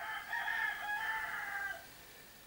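A rooster crowing once: a single pitched call lasting nearly two seconds.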